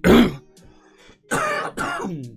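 A man coughing and clearing his throat: one loud cough right at the start, then two more close together about a second and a half in.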